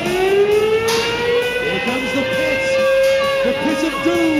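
Combat robot's spinning disc weapon whining, rising in pitch over about two seconds as it spins up, then holding steady; near the end a new whine starts and drops in pitch.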